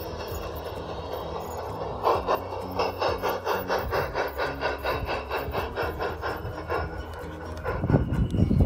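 Passing model train giving a regular rasping beat, about four to five strokes a second, starting about two seconds in and fading away near the end, over background music.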